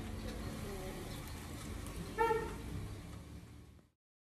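Outdoor residential ambience: a steady low rumble with faint distant voices. About two seconds in comes one short, loud pitched call, and then the sound fades out.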